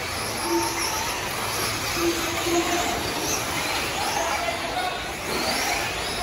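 Electric 1/8-scale RC truggies racing on dirt: high-pitched electric motor whines that rise and fall repeatedly as the trucks accelerate and slow.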